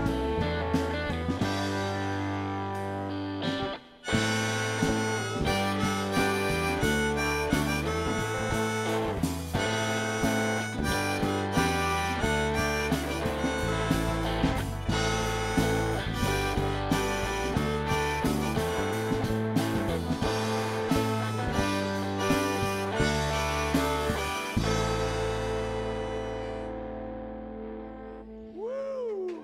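Live band music with a harmonica lead over electric guitar, bass and drums, broken by a brief stop about four seconds in. The song ends on a held chord that fades out near the end. By the player's own account, the harmonica was the wrong one for the song.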